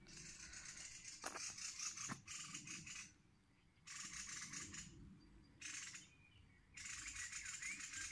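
Faint outdoor ambience: a light hiss that cuts in and out several times, with a few faint bird chirps and two soft knocks about a second and two seconds in.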